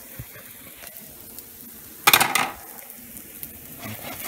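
Potato pancakes frying in butter on a hot pan, a steady faint sizzle, with a brief louder burst of noise about two seconds in.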